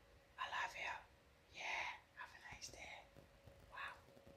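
A man whispering a few soft, breathy words in short bursts.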